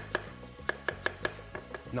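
Chef's knife slicing bok choy thinly on a wooden chopping board: about seven sharp knocks of the blade striking the board in quick, slightly uneven succession.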